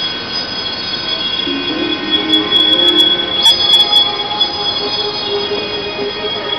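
Show soundtrack played over loudspeakers: a long, held high chord of several steady tones. A few brief clicks come about halfway through.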